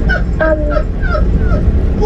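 A woman laughing: a run of short, pitched laughs.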